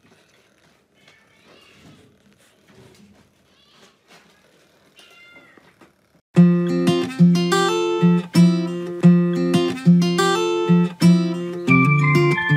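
Newborn kitten mewing, a string of faint, short, high-pitched cries. About six seconds in, loud plucked-string music with a steady beat comes in and covers everything else.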